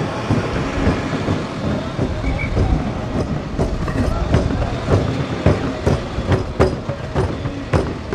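Nagara kettle drums beaten in a steady run of strikes, several a second, over a low steady rumble and voices.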